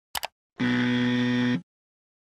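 A quick click, then an electronic buzzer sound effect: one steady, buzzy tone held for about a second that cuts off abruptly.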